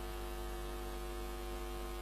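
Steady low electrical hum with a faint buzz of even overtones above it, unchanging throughout.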